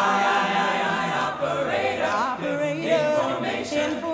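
An a cappella vocal group singing a gospel song: a solo voice over held backing chords, with a wavering, vibrato-laden line about midway.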